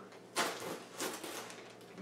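Plastic packaging bag crinkling and rustling as it is pulled open by hand, in a couple of short bursts.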